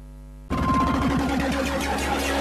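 A low steady hum, then about half a second in a loud, busy title jingle for a children's TV show cuts in suddenly and keeps going.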